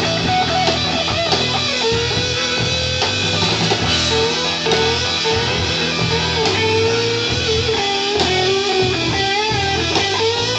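Rock band playing live: electric guitars, bass and drum kit together, with a single melody line held and bent over the top and no vocals.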